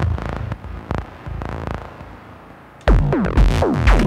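Eurorack modular synthesizer patch playing a sequenced electronic groove with most parts muted from the sequencer, leaving a thin, quieter sound with a few clicks. About three seconds in the full groove comes back in loud, with heavy bass and falling-pitch synth notes.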